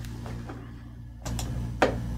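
A pause in speech with a steady low electrical hum underneath, and a short soft breath about a second and a half in.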